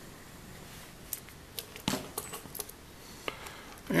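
Small metallic clicks and clinks of a small screwdriver and metal parts as screws are taken out of an electric toothbrush's metal drive frame. A handful of scattered clicks from about a second in, the sharpest near the middle.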